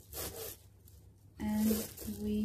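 A short rustling scrape at the start, then quiet, then a brief held voice sound, like a hum, near the end.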